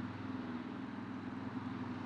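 A steady low mechanical hum, like an engine idling, over outdoor background noise.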